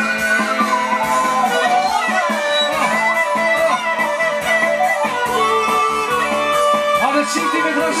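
Live Albanian folk dance music played through a sound system, with a melody line full of sliding ornaments over a steady accompaniment.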